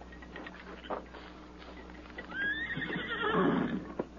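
A horse whinnying: one long, wavering call that starts about two seconds in, after a few faint hoof knocks.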